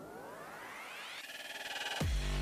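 Synthesizer riser opening the background music: a stack of tones sweeps steadily upward in pitch for just over a second, then holds on a rapidly pulsing chord while growing louder, building into an electronic track.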